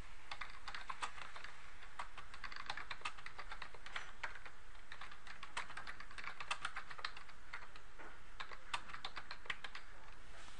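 Computer keyboard typing: irregular runs of quick keystrokes with brief pauses between words.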